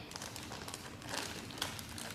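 Clear plastic bag of toy letters crinkling faintly and irregularly as a toddler's hands grip and pull at it, trying to open it.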